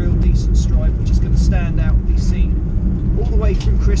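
A van driving, heard from inside its cabin as a steady low road and engine rumble, with a man talking over it.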